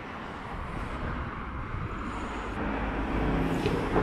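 Road traffic: a car approaching along the road, its engine and tyre noise growing steadily louder toward the end.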